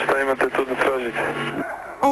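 A man speaking over a telephone line in a recorded phone call, with a steady low hum on the line beneath his voice; his speech stops shortly before the end.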